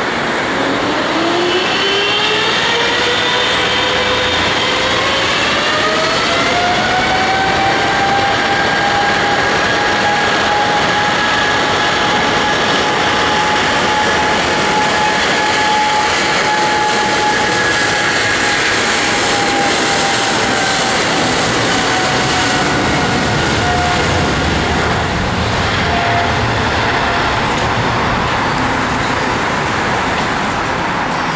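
Boeing 777's GE90 turbofan engines spooling up to takeoff thrust: a whine that rises in pitch for about seven seconds, then holds steady over a loud rushing jet noise as the airliner rolls down the runway, easing off a little near the end.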